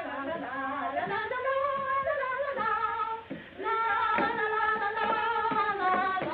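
A woman singing a tune, holding long notes, with a brief pause about three seconds in.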